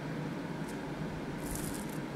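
Faint crinkling rustle of a disposable plastic piping bag being squeezed and handled while icing is piped onto a cookie, over steady quiet room noise; the clearest rustle comes about one and a half seconds in, as the bag is lifted away.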